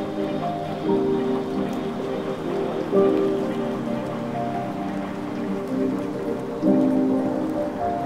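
Downtempo chill electronic music: soft held chords that change every few seconds, over a steady rain-like hiss with faint crackles.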